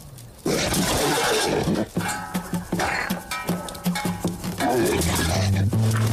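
A cartoon lion's roar, a loud rough burst of about a second and a half starting half a second in, followed by background music with short repeated notes and a bass line entering near the end.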